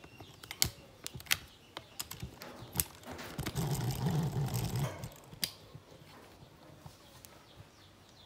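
Handling noise from a phone camera being picked up and moved: scattered clicks and knocks, with a louder rubbing stretch about halfway through.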